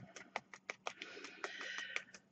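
Faint, irregular clicks and crinkles, about six a second, from a small ball of crumpled aluminium foil being compacted with light taps of a small hammer and the fingers.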